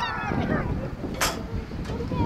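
A drawn-out yell trails off in the first half second. Then wind buffets the microphone, with a short hiss a little over a second in.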